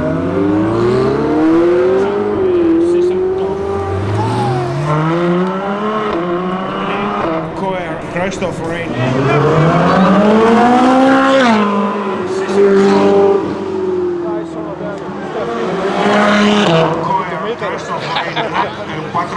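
Ferrari sports cars accelerating hard one after another, engines revving up in several rising sweeps that drop back at each gear change. The longest and loudest pull comes around the middle.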